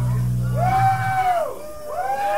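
A punk rock band's last held chord on electric guitar and bass rings out and dies away within the first second, then a voice calls out twice, with a short dip in between.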